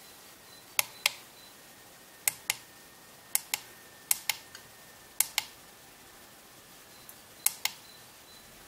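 Small tactile pushbutton on a DCC command station's front panel being pressed six times to scroll down its menu. Each press gives a pair of sharp clicks about a fifth of a second apart.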